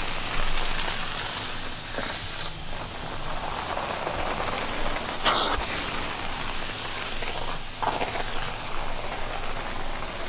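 Carpet extraction wand working a carpet: a steady rush of suction and water spray as the wand is drawn across the pile, with a brief louder hiss three times, a few seconds apart.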